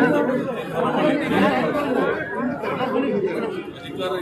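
Speech only: a man talking steadily into press microphones, with chatter from people around him.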